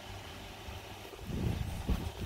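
Low rumble of handling noise on a hand-held phone microphone, swelling about a second and a half in, with a soft thump near the end.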